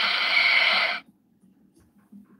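Electronic sound effect from the built-in speaker of a 12-inch Shoto Todoroki action figure, set off with its try-me switch: a steady, loud hissing rush that cuts off suddenly about a second in.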